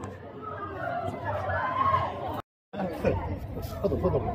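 Chatter of several men's voices talking at once, broken by a moment of dead silence about two and a half seconds in.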